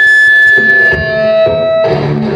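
A loud, sustained high-pitched tone from the band's stage sound, dropping to a lower held tone about a second in.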